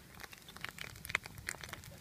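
Wood campfire crackling, with small, irregular, sharp pops.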